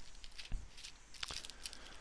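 Faint rustling of toner-transfer paper and its plastic storage bag being handled, with two light clicks.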